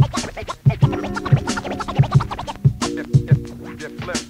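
Mid-1990s hip hop beat from a DJ mix: a kick-drum pattern with sharp snare and hi-hat strokes, joined about a second in by held low notes. Turntable scratching runs over the beat.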